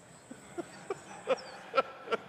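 A man laughing close to a microphone: a string of short "ha" sounds, each louder than the last.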